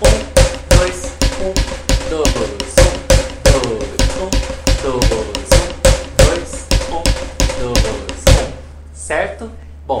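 Drumsticks playing a samba accent phrase on a snare drum with a practice pad on top, at a quicker tempo: a steady run of about two to three strokes a second with some strokes accented, under a faint steady ring. The playing stops about eight seconds in.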